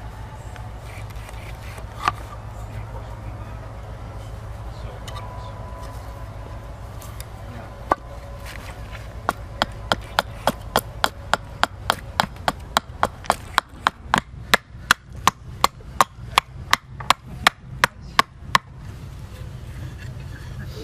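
Carving hatchet chopping a green walnut spoon blank against a wooden chopping block: a couple of single strikes, then from about nine seconds in a quick run of about three blows a second that grows louder and stops shortly before the end.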